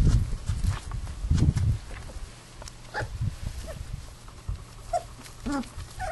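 Australian kelpie puppies whimpering and yelping: short high calls, one about halfway through and a few falling ones near the end. A low rumbling noise runs under the first two seconds.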